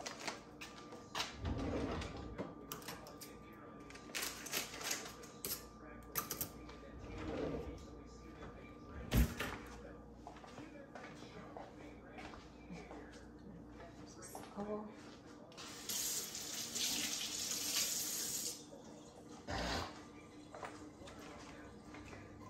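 Kitchen handling sounds: scattered clicks and knocks, with one sharp knock about nine seconds in. About three-quarters of the way through, a kitchen tap runs for two or three seconds.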